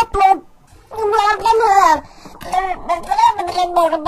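Speech only: lines of cartoon dialogue spoken in garbled, pitch-shifted computer voices, as a few short phrases with brief gaps between them.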